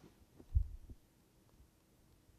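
A low, dull thump about half a second in, with a couple of fainter knocks just before and after it, over quiet room tone.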